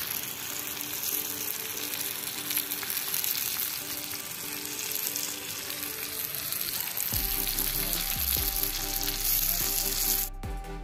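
Oil sizzling under a whole masala-coated chembali (red snapper) shallow-frying in a cast-iron pan, a steady frying hiss. Faint steady tones join underneath about seven seconds in.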